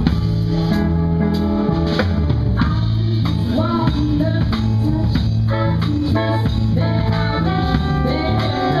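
Live band playing: a steady bass line and drum kit, with a saxophone horn section joining in over them from about two seconds in.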